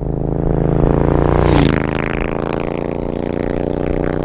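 Triumph Scrambler's parallel-twin motorcycle engine passing close by: the note grows louder, drops in pitch as the bike goes past about one and a half seconds in, then fades away.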